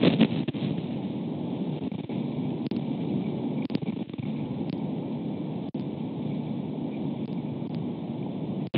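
Steady wind noise buffeting an outdoor microphone, with a louder gust at the very start and a few brief knocks. The sound cuts out briefly about six seconds in.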